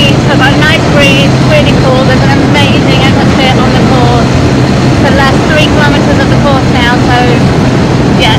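Tuk-tuk engine running at a steady hum while under way, with road and wind noise in the open-sided cab.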